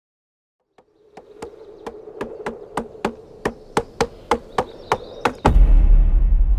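A regular series of sharp knocks, about three to four a second, over a faint steady hum. A loud deep rumble sets in near the end.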